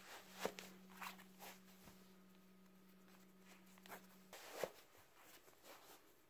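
Faint rustling and a few light knocks of a sneaker being pulled on over a sock and its laces handled, with the loudest knocks about half a second in and near the middle. A faint steady hum runs underneath and stops a little after four seconds in.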